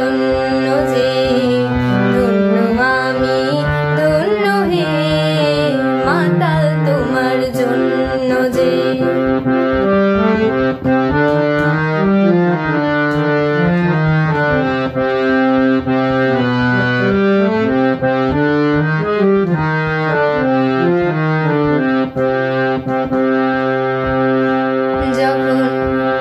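Harmonium playing a melody of held, stepped notes and chords. A woman's singing voice glides over it in the first several seconds; from about nine seconds in the harmonium plays alone as an instrumental interlude.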